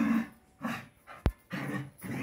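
A dog barking in short bursts, about four barks, with a single sharp click about halfway through.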